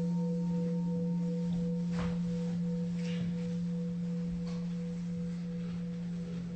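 A struck singing bowl rings on and slowly fades: a strong steady low hum under a higher tone that wavers about four times a second.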